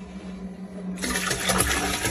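A pot of red cabbage soup tipped into a toilet bowl: a low rustling, then about a second in a loud splashing rush of liquid and cabbage pouring into the toilet water.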